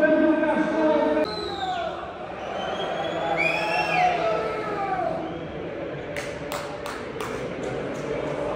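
Football stadium crowd noise with an echoing voice over the public address system, and a few sharp claps about six to seven seconds in.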